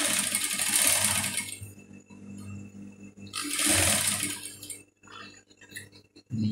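Industrial sewing machine stitching a patch pocket onto fabric in two runs: the first stops a little under two seconds in, the second starts about three and a half seconds in and lasts just over a second.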